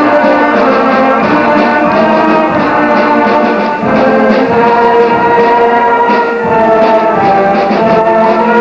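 Junior high school concert band playing held chords, with brass prominent; the chords change about four seconds in.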